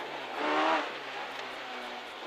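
Renault Clio N3 rally car's engine heard from inside the cabin, the note swelling briefly about half a second in, then running steadier and quieter.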